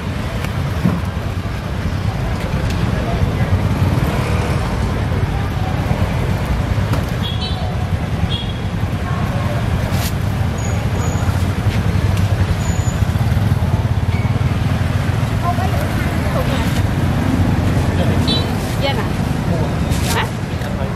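Busy street-market ambience: motorbike and road traffic running steadily, with people talking in the background.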